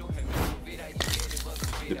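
Hip hop music plays throughout, with two short hisses of an aerosol spray can spraying paint onto a wall, about half a second and about a second in.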